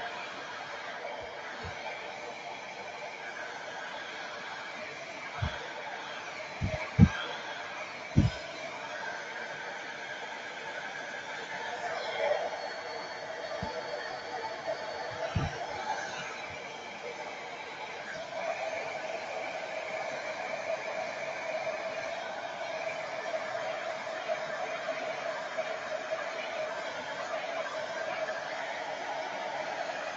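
Hair dryer running steadily to dry the paint on a plastic model kit, getting louder about two-thirds of the way through. Several sharp knocks from handling come in the first half.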